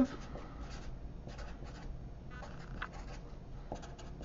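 Sharpie marker writing on a sheet of paper: a quick run of short strokes in clusters with brief pauses as a word is written out.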